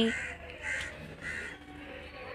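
A bird calling three times, short calls about half a second apart.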